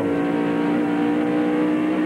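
A NASCAR Winston Cup Ford Thunderbird stock car's V8 engine running at racing speed, heard from on board the car: a loud, steady, high engine note that holds its pitch.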